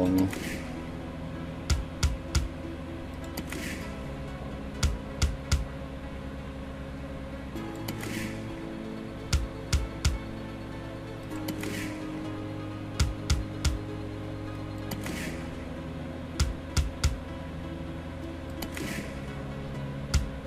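Online fruit slot machine game sounds: a steady looping backing tune, with a spin every three to four seconds, each ending in a quick run of three clicks as the three reels stop.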